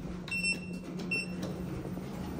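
Schindler elevator car-panel push buttons beeping as they are pressed: two high electronic beeps under a second apart, the first longer than the second, over a steady low hum in the cab.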